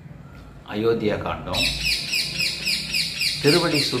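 A bird calling in a rapid run of short, high falling chirps, about five a second, starting about one and a half seconds in.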